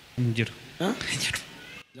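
A man's voice in two short, pitch-gliding utterances, the first about a quarter second in and the second around the middle, amplified in a large hall; the sound cuts off suddenly just before the end.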